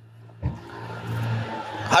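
A vehicle engine running steadily nearby, a low even hum that grows louder, with a short knock about half a second in.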